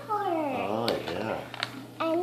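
A single high-pitched, drawn-out voice-like call lasting about a second and a half, falling in pitch with a brief dip and rise before it fades.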